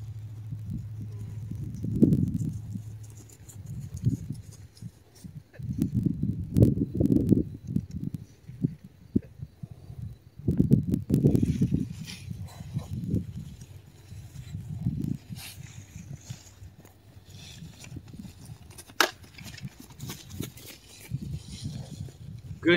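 Dull, irregular thuds of a horse's hooves on grass as it canters loose around a pen.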